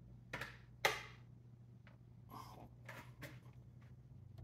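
Faint plastic clicks and rubbing as the rear headband adjustment of a Wavecel hard hat is worked while it is worn, with two sharper clicks in the first second, then softer scattered ticks and rustling.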